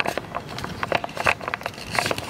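Irregular crackles and clicks over a rushing haze: wind and handling noise on a handheld camera's microphone.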